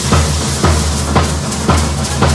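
Large double-headed bass drums of a matachín dance band beaten in a steady rhythm, a little under two strokes a second, each stroke ringing on into the next.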